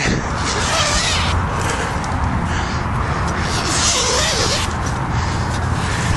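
Tent fabric rustling and handling noise on the microphone over a steady low rumble, with a louder rustle about four seconds in.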